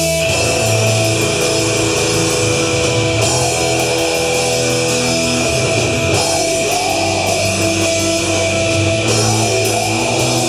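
Live metal band playing loud: distorted electric guitars, bass and a drum kit with cymbals. The full band kicks in right at the start and keeps driving on steadily.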